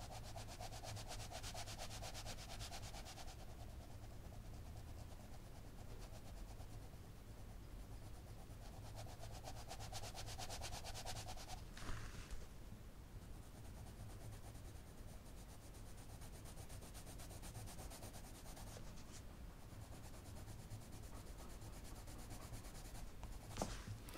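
Coloured pencil rubbing on paper in rapid, faint back-and-forth strokes that come in spells with short pauses, layering wax-based colour into a background that is becoming saturated with pigment and wax.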